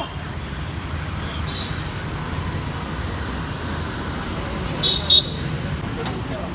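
Steady road-traffic rumble with indistinct background voices. Near the end come two short, sharp sounds in quick succession.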